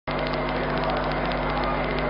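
Steady background hiss with a low, even hum underneath and faint light ticks. No distinct event stands out.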